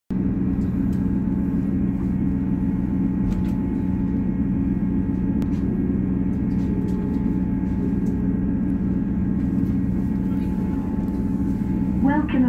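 Class 158 diesel multiple unit's underfloor diesel engine idling, heard inside the passenger saloon: a steady low hum with a faint higher whine, the train standing at the platform.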